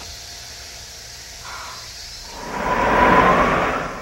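A rushing whoosh swells up a little over two seconds in and fades out again near the end, over a faint steady hiss.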